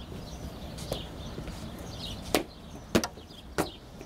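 A few sharp footfalls of boots: one about a second in, then three firm steps about 0.6 s apart in the second half, like a soldier marching up to report. Faint bird chirps and a low outdoor hum lie underneath.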